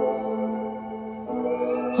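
Instrumental rap backing music of held, sustained chords, changing to a new chord about one and a half seconds in.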